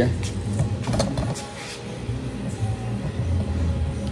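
Small electric bubble machine's fan running steadily on its high setting, with a few knocks and rustles as the phone recording it is moved.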